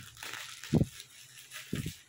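Plastic bubble wrap around a cardboard box crinkling as it is handled and pulled open, with two soft low thumps about a second apart.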